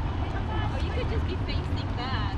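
Street ambience of a busy city square: a steady low rumble of road traffic, with snatches of passersby's voices over it.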